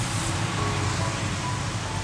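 Soft background music with a few faint held notes, over a steady low hum of the car idling, heard from inside the cabin.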